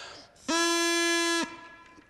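Drinking-straw reed horn, a plastic straw with its end flattened and cut into a V-shaped double reed, blown once: a single steady, buzzy note about a second long. The reed flaps periodically open and shut, setting up a standing wave along the straw's length that fixes the pitch.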